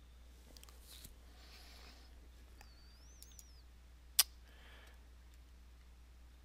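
Computer mouse buttons clicking: a few faint clicks, then one sharp, louder click about four seconds in, over a steady low hum. A faint, brief wavering high chirp comes about three seconds in.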